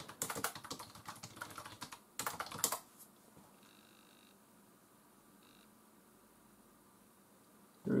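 Typing on a PowerBook G4 laptop keyboard: a quick run of keystrokes for about two seconds, then a few louder key presses, then near silence.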